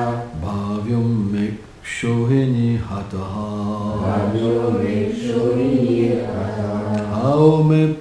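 A man's voice chanting a Sanskrit verse in a slow, melodic recitation, holding notes and moving between pitches, with a brief breath pause about two seconds in and a higher held note near the end.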